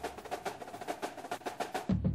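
Snare drum playing a quick, steady run of taps: a marching drum cadence in the music bed, with a low bass coming back in near the end.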